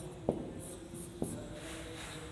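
Marker pen writing on a whiteboard: faint scratchy strokes, with two light ticks of the pen tip, about a quarter second in and again just past a second.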